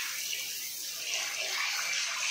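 Water pouring and splashing onto a tiled bathroom floor and running down an open floor-trap drain. The trap has just been cleared of a blockage with drain-cleaner powder and now takes the water freely.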